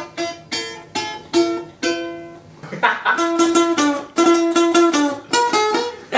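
Balalaika being plucked. It starts with single notes that ring and fade, two or three a second, then about halfway through breaks into quicker, denser picking of repeated notes.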